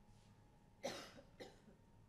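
A single short cough about a second in, followed half a second later by a fainter second burst, amid otherwise near silence.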